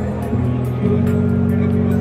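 Laser harp sounding low, sustained synthesizer notes as a hand breaks its light beams; the note changes abruptly twice in the first second.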